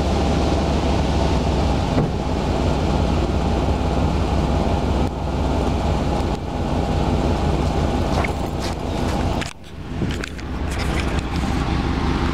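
Chevrolet Suburban's engine running steadily with a deep, even exhaust rumble. About nine and a half seconds in the sound briefly drops away and there are a few knocks and rustles of the camera being handled.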